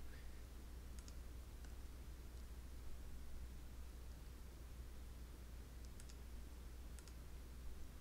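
Faint computer mouse clicks, a few scattered single ticks with a pair about a second in, over a steady low hum and faint hiss.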